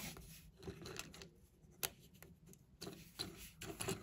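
Faint taps and small clicks of fingers handling and sliding small plastic toy-brick drawer pieces, with one sharper click about two seconds in.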